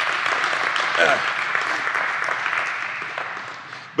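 Audience applauding, a dense patter of many hands clapping that dies away over the last second.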